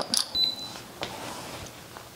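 Atezr L2 laser engraver switching on at its key switch: a click, then a short high beep as it powers up. Faint steady background noise follows.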